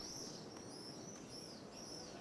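Faint small-bird chirping: a series of short high chirps, about two a second, over low street ambience.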